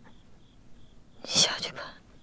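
A woman's breathy, hoarse whisper: one short phrase spoken weakly, about a second in.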